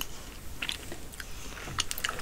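Close-miked chewing of crispy fried chicken: crunches and crackles of the breading among softer mouth sounds, the sharpest crunches about two-thirds of a second in and just before the end.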